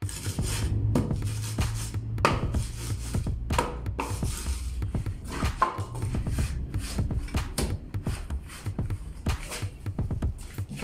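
A wooden board scraped across the top of a steel hollow-block mould full of concrete mix, in irregular rasping strokes, with knocks from the metal mould. Background electronic music plays under it.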